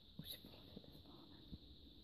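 Near silence: room tone with a few faint, soft taps.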